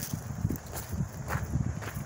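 Footsteps on a gravel path, an irregular series of short scuffs and knocks.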